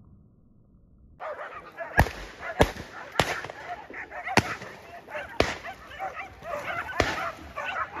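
A pack of hunting dogs barking and yelping over one another as they hold a wild boar at bay, starting about a second in, with several sharp clicks among the calls.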